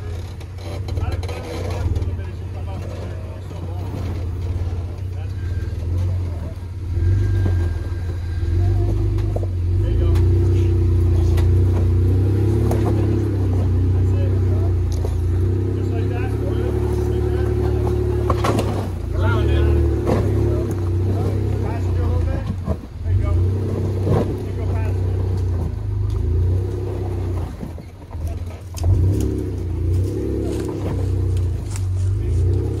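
Rock-crawling Jeep engine working at low speed under load, its note rising and falling as the throttle is fed in to climb a rock ledge. A few sharp knocks from tyres or chassis on rock come past the middle and near the end.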